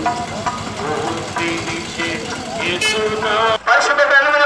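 Street noise: a motor vehicle engine running under scattered voices. It cuts off abruptly shortly before the end, and a man starts speaking.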